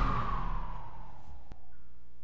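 The tail of the preceding promo fades away, then a short click about one and a half seconds in, followed by a steady low hum in the gap between recorded radio spots.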